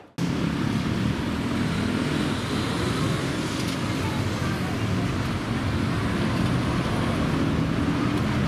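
Okinawa Urban Monorail (Yui Rail) train running along its elevated track, a steady rumble that starts abruptly a moment in.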